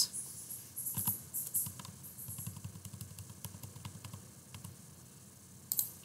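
Typing on a computer keyboard: a run of quick, irregular key clicks for about five seconds, then it goes quiet near the end.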